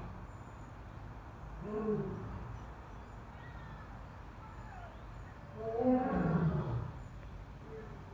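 Male Asian lion roaring: a short call about two seconds in, then a longer, louder call falling in pitch around six seconds in.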